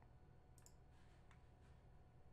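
Near silence with room hum and a few faint clicks about half a second, one and a quarter and one and two-thirds seconds in, typical of a computer mouse being clicked.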